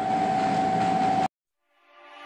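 Steady background hiss with a constant mid-pitched hum, running on from under the speech and cutting off abruptly a little over a second in. Silence follows, and music begins to fade in at the very end.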